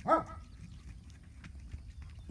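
A dog barking once, a single short bark just after the start.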